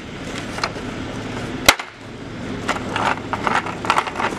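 Casters of a green plastic dolly rattling and rolling on concrete, with one sharp clack a little before halfway as the dolly comes down onto its wheels.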